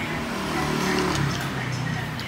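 A motor vehicle engine running steadily close by, a low hum whose pitch sinks a little in the second half, as street traffic passes.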